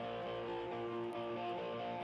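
A guitar chord held and ringing steadily, played softly.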